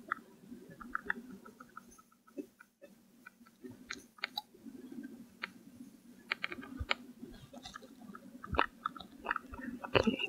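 Faint scattered clicks, taps and scraping from working appliqué by hand: a wooden cuticle stick pulling the starched turning allowance back over freezer paper while a steam iron is pressed and moved over it. A few sharper clicks come in the second half.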